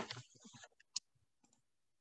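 Faint clicks of a computer mouse, the sharpest single click about a second in, with a short soft sound at the start; otherwise near silence.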